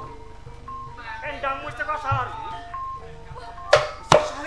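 Soft gamelan accompaniment of held, ringing metallophone notes, with a voice singing a slow, wavering line in the middle. Near the end a sharp, loud strike sets off a burst of drumming.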